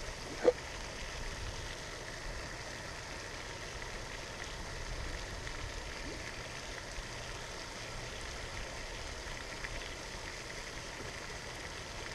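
Steady, faint splashing of a pond's spray fountain, with a brief sharper sound about half a second in.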